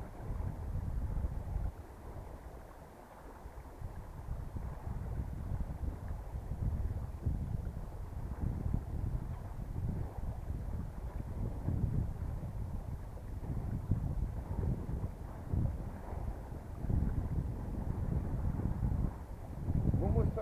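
Wind buffeting the camera microphone aboard a small sailboat under sail: a low, uneven rumble that surges in gusts, easing for a couple of seconds early on before picking up again.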